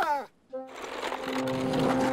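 Cartoon soundtrack: a pitched sound slides down at the start, a brief silence follows, then a steady whirring sets in under held low music notes, fitting the kick scooters rolling.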